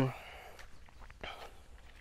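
A pause in a man's talk: his drawn-out "um" cuts off at the very start, leaving a faint outdoor background with a few soft clicks and rustles.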